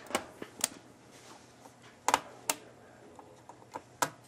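A handful of sharp plastic clicks and taps from a laptop keyboard being pried at its top latch with a small flathead screwdriver and pressed back into place. There are about five clicks, irregularly spaced, two of them close together about two seconds in.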